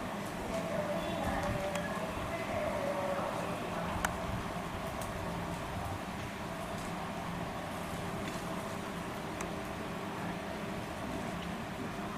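Steady outdoor background noise with faint voices in the first few seconds, and a single sharp click about four seconds in.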